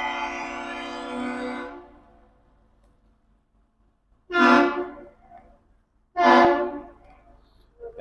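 The Aerial Lift Bridge's horn sounding the master's salute in return to a passing ship: a long blast that fades out about two seconds in, then two short blasts about two seconds apart.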